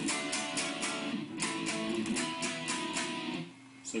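Guitar played in quick, even strokes, about four or five a second, on a chord shape of a three-string D power chord with the third string lowered a half step, breaking off briefly shortly before the end.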